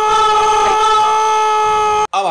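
A loud, steady horn blast: one held, unwavering chord-like note with no rhythm, ending sharply.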